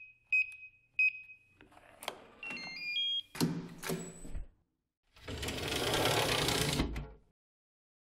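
Electronic sound effects for an animated logo sting: two short high beeps, a run of stepped electronic blips, a hit with a low tone, then a swell of noise that cuts off suddenly about seven seconds in.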